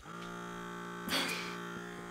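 Battery-powered Dermasuction pore vacuum switching on and running with a steady buzzing hum from its small suction motor. A short burst of breathy noise comes about a second in.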